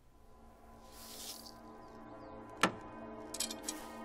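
Background film-score music fades in from near silence to a sustained, held chord. A single sharp click comes a little past halfway.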